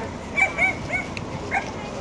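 A dog giving a series of short, high-pitched yips, about five in two seconds.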